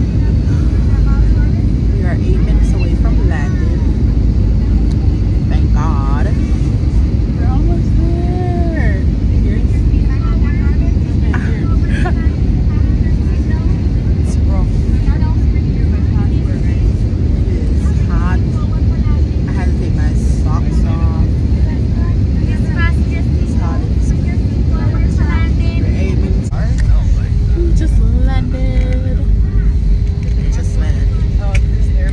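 Airliner cabin noise: a loud, steady low rumble of engines and airflow heard from a passenger seat, with faint, muffled voices over it. A steady higher hum joins near the end.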